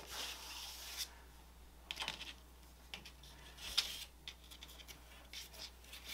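A charcoal stick scratching and rubbing on gesso-textured drawing paper, a longer rub at first, then short, uneven strokes with a few sharper ticks.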